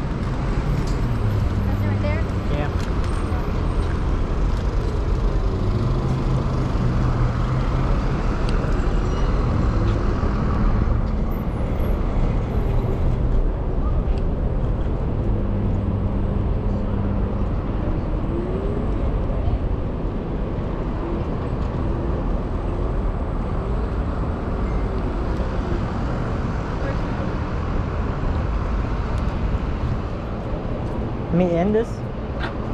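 Steady wind rumble on the microphone of a camera riding on a moving electric scooter, over street traffic noise.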